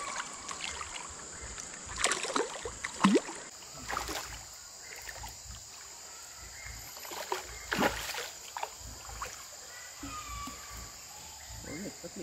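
Hooked patin catfish splashing at the river surface as it is played on rod and line: several separate splashes, the loudest around two to four seconds in and again near eight seconds.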